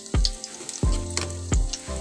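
Egg frying in oil in a steel wok, a steady sizzle, under background music with a regular beat.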